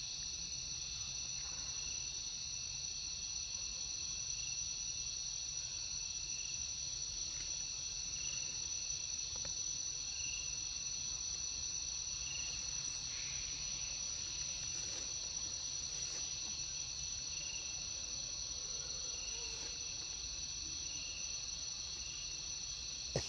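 Steady high-pitched insect chorus, with a lower pulsing call repeating about once a second beneath it.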